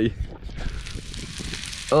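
Mackerel fillets frying in butter in a cast iron pan: a steady sizzle that comes through from about half a second in.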